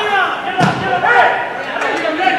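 Players' voices calling and shouting on a football pitch, with one sharp thud of a football being kicked a little over half a second in.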